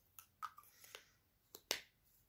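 A lipstick tube and its cap being handled: a handful of small, sharp clicks and taps, the loudest a click near the end.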